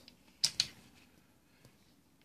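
Two short clicks close together about half a second in, a faint tick later, and otherwise near silence.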